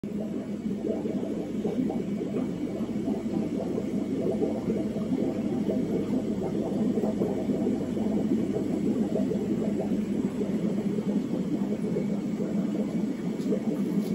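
Steady low rumble and hum of aquarium equipment: air pumps driving bubbling sponge filters, running constantly.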